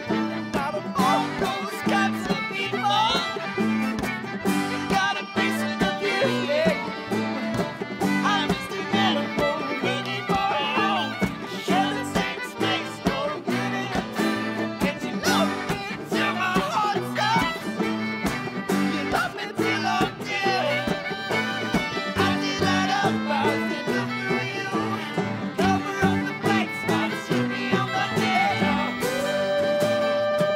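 Live bluegrass string band playing an instrumental break: quick picked banjo and acoustic guitar over a steady upright-bass pulse, with fiddle and accordion. A long held note comes in near the end.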